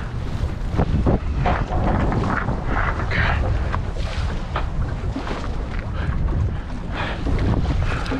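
Wind buffeting the microphone over choppy water slapping and splashing against the hull of a small boat.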